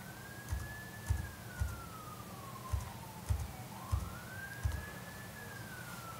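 Faint wailing siren, its pitch slowly rising and falling twice. Soft knocks and clicks come at irregular intervals about half a second apart.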